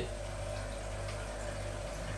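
Steady low mechanical hum from the running continuous alcohol still setup, with a thin, even tone above it.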